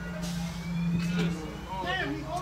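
MCI D4500 coach's diesel engine running with a steady low drone heard from inside the cab, louder in the first second and a half, with a faint whine rising slowly in pitch over it.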